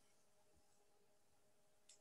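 Near silence: a pause between speakers on a video call, only faint room tone.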